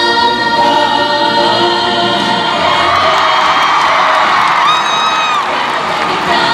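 Musical theatre ensemble number: a chorus singing held chords over a backing track, with one long high note sustained near the end.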